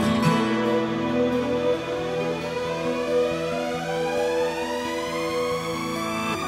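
Background music: held notes, with a tone sweeping steadily upward in pitch from about a second and a half in.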